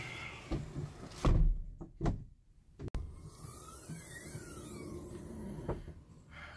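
A vehicle's rear hatch pulled down and shut with a heavy thump about a second in. Later, after a sharp click, comes a sweeping sound in which one tone rises while another falls, crossing each other.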